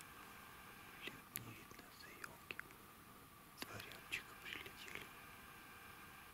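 Faint whispering voice in short bursts, with a few soft clicks, over quiet background.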